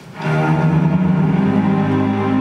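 A live orchestra strikes up the opening of a song. Bowed strings come in suddenly and loud and hold a low sustained chord, with a deeper note joining about a second and a half in.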